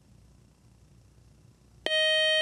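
Quiz-show buzzer: a loud, steady electronic tone that starts suddenly near the end, signalling that a player has buzzed in to answer.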